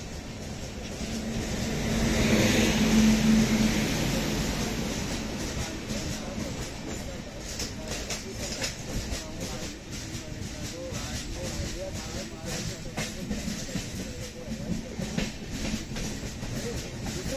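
An electric freight locomotive passing close by on the adjacent track, loudest a couple of seconds in with a steady low hum. It is followed by its covered goods wagons rolling past, rattling, with irregular sharp clicks of wheels over rail joints.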